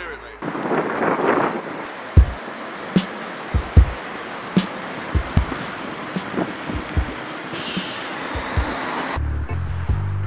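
Wind and rumble on the microphone of a camera carried on a moving bicycle, broken by irregular sharp knocks. Music with a steady beat comes in near the end.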